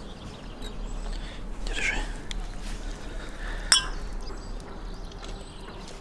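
A wine glass clinks once, sharply, a little past halfway, with a brief ring after it. Earlier, about two seconds in, a short animal call is heard.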